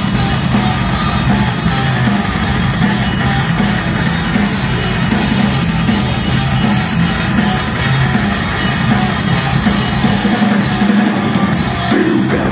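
Live heavy metal band playing loudly: distorted electric guitars, bass guitar and a drum kit in a dense, unbroken wall of sound. The deepest bass drops away about ten seconds in.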